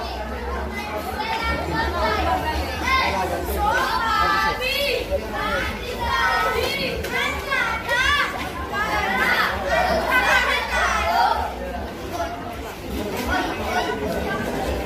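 A crowd of children shouting and chattering at once, many high voices overlapping with rising and falling calls.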